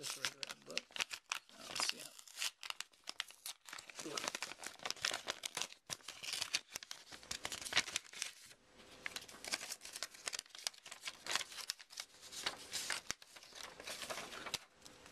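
Sticky tape being peeled and a paper wrapping crinkled and torn open from around a card sleeve, in quick, irregular crackles and rips throughout.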